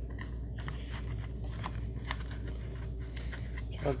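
Faint scrapes and small clicks of fingers pushing a cat5 cable through a small hole in drywall, over a steady low hum.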